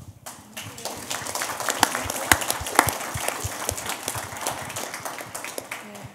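Audience applauding: many hands clapping together, building up quickly just after the start and then slowly tapering off.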